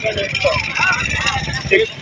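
Scattered voices over a steady low rumble: the background of a busy open-air street market.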